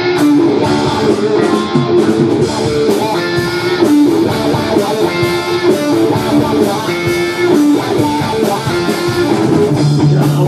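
A live rock band playing loudly, with electric guitar to the fore over bass guitar and drums.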